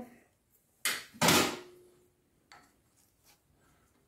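Short handling noises at an air compressor pump's intake filter housing: two brief scraping rustles about a second in, then a couple of light clicks as hands and pliers work at the felt filter element.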